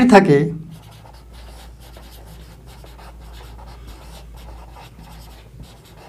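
A man's spoken word ends in the first half second; then a marker pen writes on a whiteboard, a steady run of short, quick strokes as a line of handwriting is formed.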